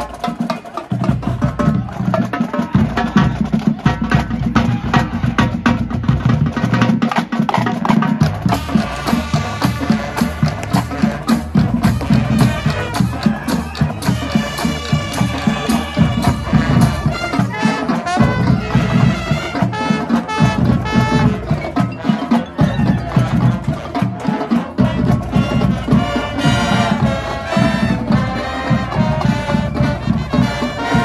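A marching band playing its field show live: brass and a drumline, with mallet percussion from the front ensemble, in a dense run of rapid percussive strokes over sustained brass notes.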